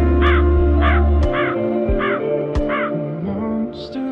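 A crow cawing five times, about half a second apart, over slow background music with sustained tones.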